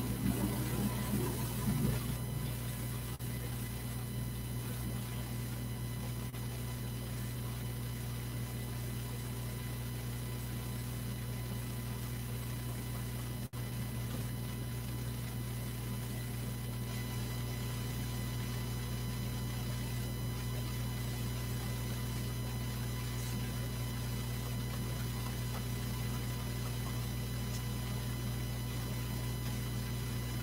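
Steady electrical mains hum with a few faint, thin high tones above it.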